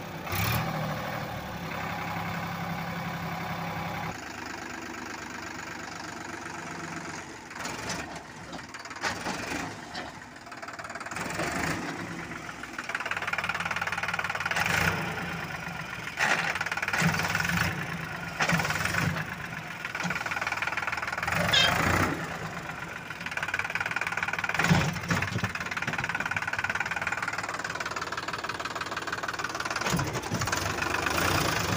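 Sonalika DI 740 III tractor's diesel engine running while the tractor is stuck in soft soil, its pitch rising and falling as it is revved. About eight sharp knocks break in along the way.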